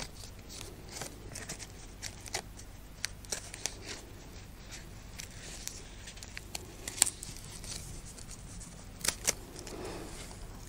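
Small scissors snipping through a folded stack of paper: a run of short, irregular snips with light paper rustling. The loudest snip comes about seven seconds in, and two more come close together near nine seconds.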